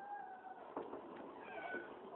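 A dog whining: two drawn-out, high, steady whines, the second one higher and coming about a second and a half in.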